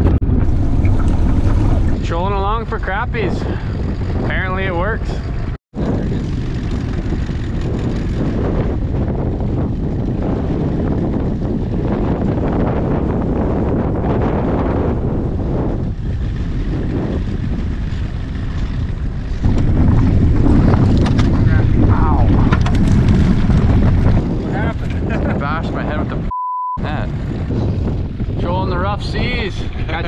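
Strong wind buffeting the microphone in an open boat on choppy water, a dense low rumble throughout, with muffled voices in places. The sound cuts out completely for an instant after about five seconds, and a short steady beep sounds near the end.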